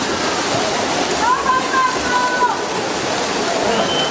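Steady wash of splashing and crowd noise in an indoor swimming-pool hall during a freestyle race. One voice calls out, long and held, from about a second in.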